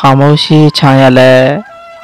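A man's voice reciting, drawing out the last syllable and breaking off about one and a half seconds in. Faint steady tones remain after it.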